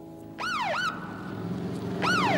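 Electronic emergency-vehicle siren: about half a second in it swoops down in pitch and straight back up, then holds a high note. The next swoop begins at the very end.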